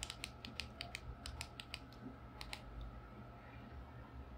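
Keypad buttons of a Baofeng DM-32UV handheld radio being pressed in quick succession to enter its unlock password: a rapid run of about a dozen faint clicks over the first two and a half seconds.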